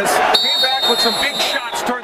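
Boxing arena broadcast sound: crowd noise and voices, with a high steady electronic-sounding tone that starts about a third of a second in and cuts off abruptly after about a second and a half.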